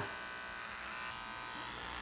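Electric hair clippers buzzing steadily as they are pressed against a tanned deer hide, shaving the hair down.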